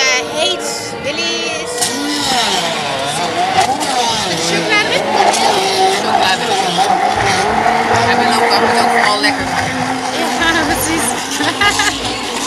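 Hand-held stick blender running in a plastic beaker, blending a milk-and-fruit shake. Its motor whine shifts up and down in pitch as the load changes, from about two seconds in until near the end.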